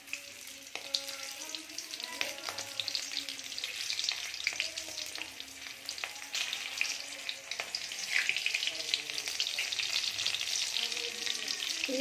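Green chillies and cumin seeds sizzling in hot oil in a kadhai, a steady hiss full of small pops that grows a little louder in the second half.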